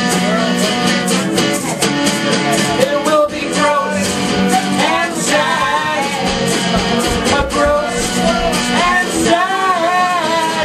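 Live band music: a voice singing, pitch rising and falling, over strummed guitar chords.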